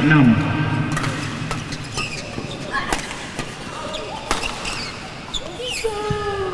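Badminton rally: a string of sharp racket hits on the shuttlecock, irregular, about a second apart. A public-address announcer's voice ends just as it begins.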